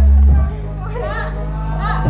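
Loud music with sustained low bass notes that shift to a new pitch about half a second in, with several people's voices, including children, calling over it.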